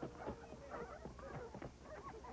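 Dogs yipping and whimpering in quick, short cries, with a few hoof thuds from horses walking.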